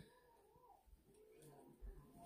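Near silence, with a pet's faint, thin whining.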